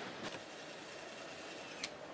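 Car assembly plant floor ambience: a steady background hum with a couple of light clicks, the sharpest near the end.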